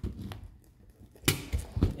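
A Glock magazine being pushed down into a Kydex-insert magazine pouch: a faint tap, then a single short, sharp scrape of polymer on Kydex a little past halfway as it seats.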